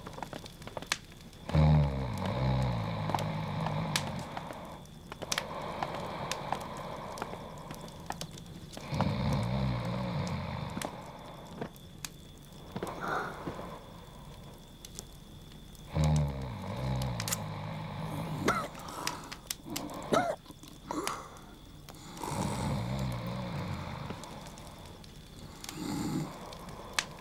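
A man snoring: four long, rattling snores at regular intervals of about seven seconds, in deep sleep.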